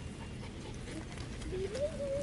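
Miniature poodle sniffing around in the grass close to the microphone, over a low rumble. A voice begins faintly near the end.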